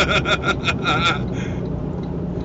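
A man laughing in quick short bursts for about the first second, then steady low road and engine noise inside a moving car's cabin.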